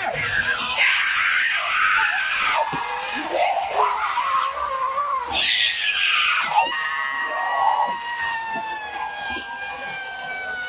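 Several people screaming in fright, their voices overlapping. In the second half one long high-pitched scream is held, dropping in pitch near the end.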